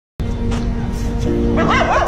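A dog whining in quick, high cries that rise and fall, starting about one and a half seconds in, over background music of sustained low notes.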